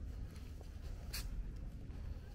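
Steady low outdoor rumble with one short, scratchy scrape about a second in.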